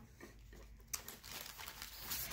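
Faint rustling of paper craft pieces being handled on a table, with a light tap about a second in.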